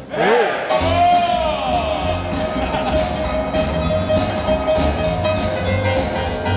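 Live boogie-woogie band of grand piano, double bass and drum kit breaks off for a moment, then comes back in with cymbal strokes about twice a second. A long sung note that bends in pitch is held over the music.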